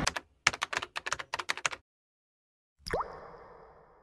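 Intro sound effects: a quick run of about a dozen typing-like clicks, a second of silence, then a short plop with a fast rising pitch that fades away.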